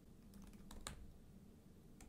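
Faint keystrokes on a computer keyboard: a quick run of about five clicks within the first second, typing a compile command.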